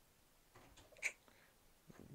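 Near silence, just room tone, broken by one brief, faint, hissy sound about halfway through.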